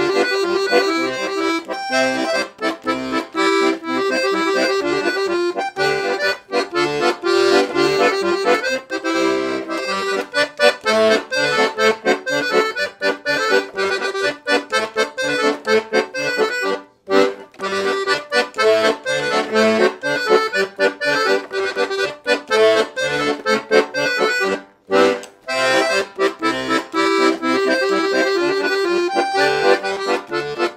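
Walther (Weltmeister) Teeny 48 piano accordion, a small 26-key, 48-bass instrument with two middle reeds in musette tuning, playing a tune: melody on the treble keys over bass and chord accompaniment from the bass buttons. The playing breaks off briefly twice, a little past halfway and again near the end.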